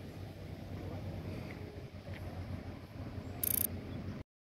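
Steady low rumble of distant excavators working a riverbed. About three and a half seconds in, a short high-pitched electronic tone sounds.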